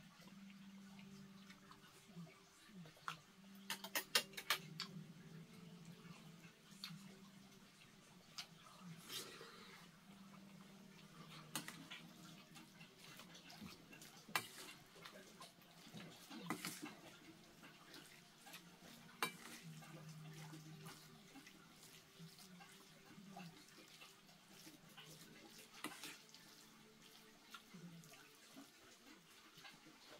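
Faint clinks and scrapes of a metal spoon and chopsticks against a stainless steel bowl as rice is mixed with jajang sauce, with a quick run of clinks about four seconds in. A faint steady low hum runs underneath.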